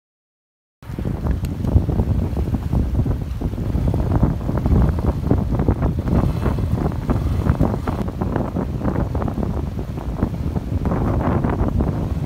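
Silence for about a second, then wind buffeting the microphone over the rush and splash of a shallow river as people wade through it.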